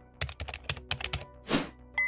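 Computer keyboard typing sound effect: a quick run of about eight key clicks, then a short whoosh about three quarters of the way in, over quiet background music.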